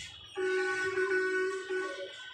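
A single steady horn-like tone with a stack of overtones, starting about a third of a second in and holding for about a second and a half before cutting off.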